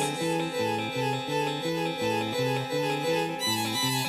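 Huayno band music, an instrumental passage with no singing: a bass line stepping through a few notes a second under sustained chords.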